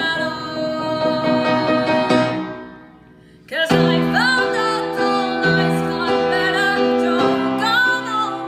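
Acoustic ballad of a young woman singing the lead over piano. About two and a half seconds in the music dies away to a brief hush, then comes straight back a second later with voice and piano together.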